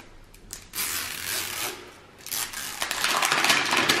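Paper wrapper layer being torn and peeled off a plastic LOL Surprise Under Wraps capsule, crackling in two bursts: a short one about a second in and a longer one from about two seconds on.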